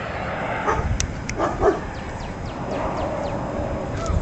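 Short yipping animal calls about a second in, then a quick run of high, falling chirps.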